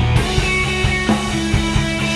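Rock band playing live: electric bass holding low notes under a steady drum beat, with electric guitar on top.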